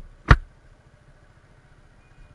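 Motorcycle riding along a rough dirt track: one sharp knock about a third of a second in, then the engine running quietly under low, steady road noise.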